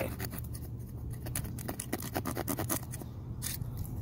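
OerLa OLHM-12 mini cleaver knife carving a notch into a wooden stick: a quick run of short cuts and scrapes of the steel blade into the wood, with one longer stroke a little after three seconds in.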